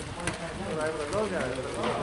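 People talking and calling out, with a couple of short knocks about a quarter second and a second in.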